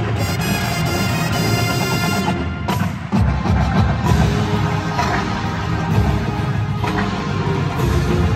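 Marching band playing: a held brass and woodwind chord, then from about three seconds in a drum-driven passage with sharp hits.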